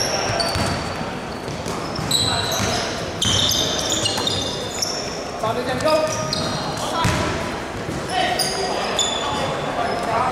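Basketball game on a hardwood court: many short, high rubber sneaker squeaks on the floor and the knock of the ball bouncing, all echoing in a large hall.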